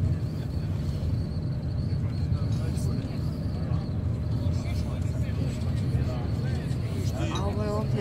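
Steady low rumble of a moving vehicle heard from inside its cabin, with a faint high whine above it. People's voices come in near the end.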